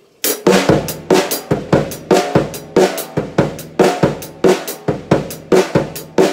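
Drum kit playing a linear eighth-note funk groove grouped three plus five: hi-hat, snare, bass drum, then hi-hat, snare, hi-hat, bass drum, bass drum, one drum at a time with no two struck together. It starts a moment in as an even stream of single strokes.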